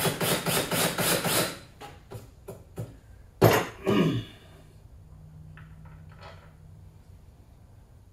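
DeWalt 20V cordless drill running a countersink bit into a screw hole in a wooden cabinet door, cutting with rapid even pulses for about a second and a half to make the recess deeper for the screw head. About three and a half seconds in comes a sharp knock as the drill is set down on the wooden bench, followed by a few faint clicks of hardware being handled.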